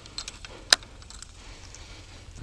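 Small clicks and rattles of a baitcasting reel and lure being handled, with one sharp click about two-thirds of a second in.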